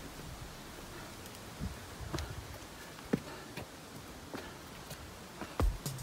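Footsteps crunching on a dry gravel and leaf-litter trail: faint, irregular crunches, a few seconds apart at first, with louder low thumps near the end.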